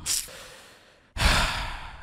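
A man's quiet laugh breathed out close to the microphone: a short puff of air at the start, then a louder, longer exhale through the nose about a second in.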